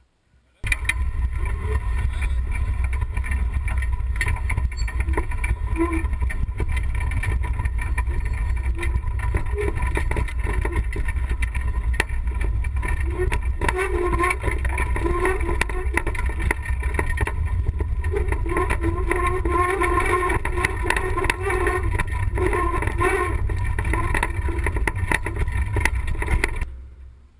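Wind buffeting the microphone with the rattling and jolting of an all-terrain wheelchair rolling down a rough dirt track; it starts suddenly about half a second in.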